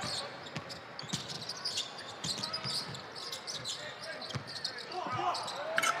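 Basketball dribbled on a hardwood court, with irregular bounces over a low arena background.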